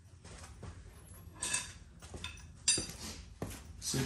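A few scattered light clinks and knocks of metal hand tools being handled, over a faint steady low hum.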